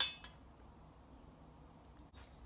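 A single sharp clink of a metal kitchen utensil with a brief ring, then a faint second tick; the rest is quiet room tone.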